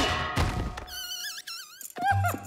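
Cartoon sound effects: a loud thud as a character lands flat on the floor, a second smaller knock just after, then a wavering, warbling high tone about a second in that fades out.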